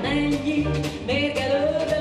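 A woman singing an evergreen into a microphone with a live jazz combo of keyboard, guitar, upright double bass and drum kit, the drums keeping a steady beat of about two cymbal strokes a second under a walking bass.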